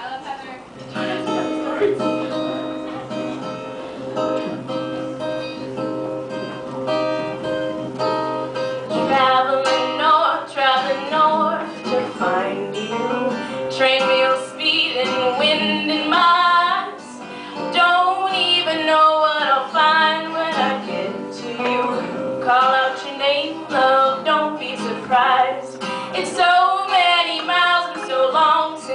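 Live acoustic guitar playing a steady accompaniment, joined about a third of the way through by a woman singing.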